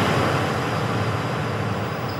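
A steady rushing noise with a low rumble, fading slowly toward the end.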